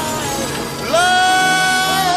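Electronic dance track with a sung vocal; about a second in the voice glides up into a long held note over the backing.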